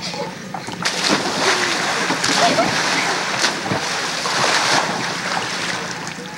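A person plunging off a diving board into a swimming pool: a splash about a second in, then several seconds of churning, sloshing water, recorded on a camcorder microphone.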